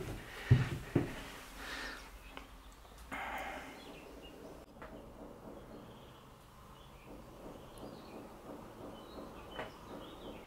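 Quiet outdoor ambience with faint bird chirps, and two soft thumps about half a second and a second in, from movement in the empty metal van.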